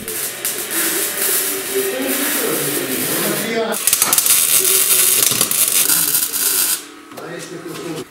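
MIG welding arc crackling as steel absorber mounts are welded onto a sled frame, in two runs with a brief break about three and a half seconds in, stopping about seven seconds in.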